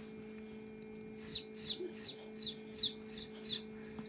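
Ayam Cemani chick peeping from inside its pipped egg: a run of about seven short, high peeps, each falling in pitch, about three a second, starting a second in. A steady low hum from the incubator runs underneath.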